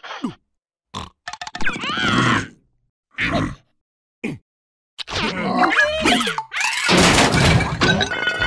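Wordless cartoon character voices: short grunts and squeals separated by silent gaps. From about five seconds in they give way to a continuous busy commotion of yelling and cartoon sound effects, louder near the end.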